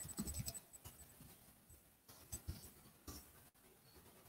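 Faint, scattered taps of a computer keyboard and mouse over near silence: a cluster in the first half-second, then a couple of short taps in the second half.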